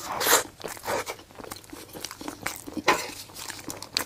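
Close-miked eating of a soft chocolate-filled mochi: a loud bite near the start, then wet chewing with many small clicks.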